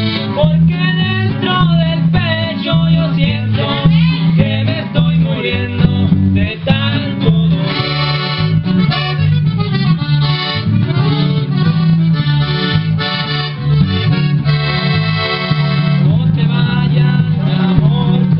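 Live norteño-style band playing: a piano accordion plays fast melodic runs over electric guitar and a steady, pulsing electric bass line.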